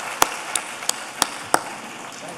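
Audience applauding, with one person's loud, sharp claps standing out at about three a second until shortly before the end.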